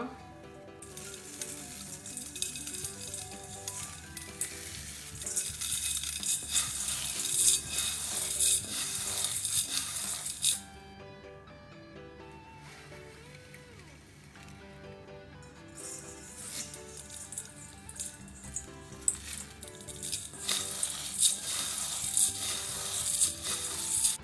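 Dry vermicelli being crushed and broken up by hand into a stainless-steel bowl: a dense crackling in two long spells with a short pause between, over background music.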